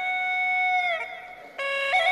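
Flute melody in an instrumental backing track. A long held note drops in pitch about a second in and fades, then a new note starts near the end.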